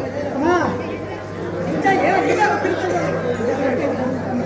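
Voices in a hall: one voice sweeps up and then down in pitch about half a second in, then several voices talk over one another, over a steady low hum.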